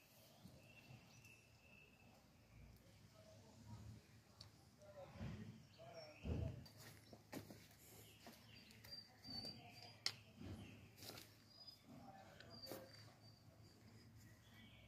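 Near silence: faint outdoor ambience with a few thin, high bird chirps and some soft low thuds around the middle.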